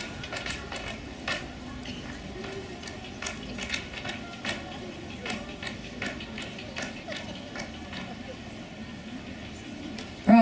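Tap dancing on a stage floor: a child's tap shoes striking in a string of sharp, uneven taps with short gaps between.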